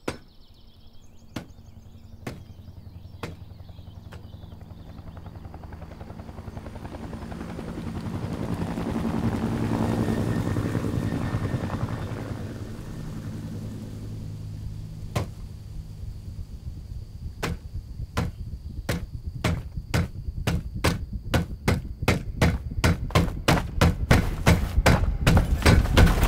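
Film sound design: a low drone swells up, peaks about ten seconds in and dies back. It gives way to a helicopter's rotor thumps, slow at first and coming faster and faster toward the end.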